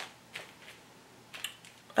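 A few faint clicks and rustles of a parchment-paper pattern being handled on fabric as a pin is worked through it; the pin is not coming back up through the parchment easily.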